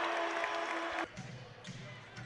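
Basketball arena crowd noise with a steady held tone, cut off abruptly about a second in. It gives way to quieter gym sound with faint basketball dribbles on the hardwood court.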